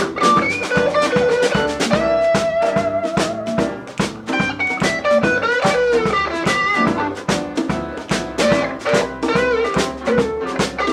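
Live blues band playing an instrumental break: an electric guitar lead with sliding, bent notes over drum kit, bass and piano, with a steady beat.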